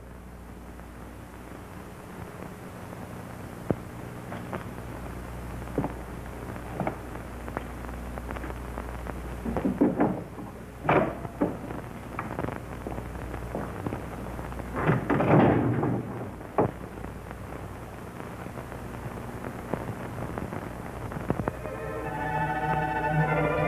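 Steady low hum and faint scattered crackle of an old film soundtrack, with short muffled noises about ten and fifteen seconds in.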